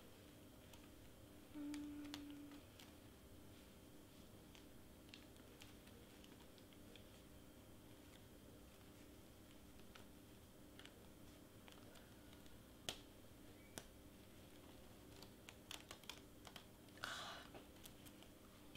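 Near silence with sparse faint clicks and crackles, and a short crinkle near the end, as the clear plastic carrier sheet is peeled off foil heat transfer vinyl. A brief low hum about two seconds in.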